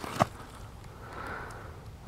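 A short, sharp click about a fifth of a second in, then a faint breath drawn in through the middle, between two parts of a spoken sentence.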